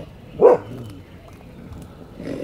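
An animal gives one short, loud call about half a second in.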